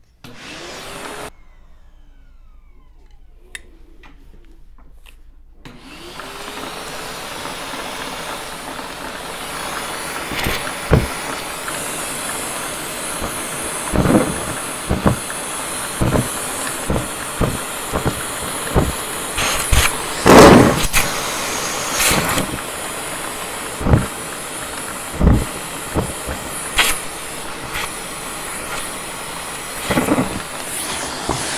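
Henry vacuum cleaner motor spinning up about six seconds in and then running steadily with a high whine. Over it come a series of sharp knocks and clatters as the metal wand is handled close to the microphone while a clog of grey fluff is pulled out; the loudest comes a little past the middle.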